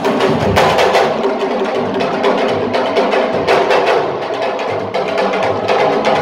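Loud, fast drumming music: many drum strokes packed close together in a driving, unbroken rhythm.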